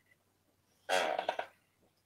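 A brief soft vocal sound from a person's voice, about half a second long, starting about halfway in; otherwise near silence.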